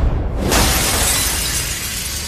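Glass shattering: a sudden crash about half a second in, then slowly dying away.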